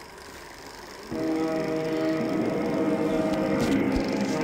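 Music from a 16 mm film's soundtrack, coming in suddenly about a second in and then holding steady as the film starts to play through the projector.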